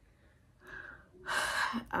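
A woman's audible breathing: a soft breath about half a second in, then a louder, sharp intake of breath near the end.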